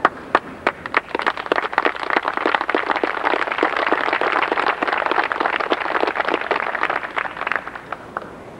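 Audience applauding: a few scattered claps at first, building within about a second to steady applause, then thinning out near the end.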